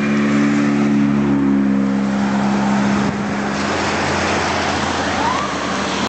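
Road traffic passing close. For about the first three seconds a vehicle's horn sounds loud and steady on several low notes, then it stops and tyre and engine noise carries on. A faint short rising tone comes near the end.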